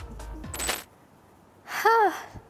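A short, sharp noise burst about half a second in. After a quiet spell, near the end, comes a woman's brief, loud vocal exclamation that falls in pitch.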